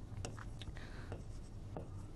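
Stylus writing by hand on an interactive display screen: faint light ticks and scratches of the pen tip on the glass as a word is written.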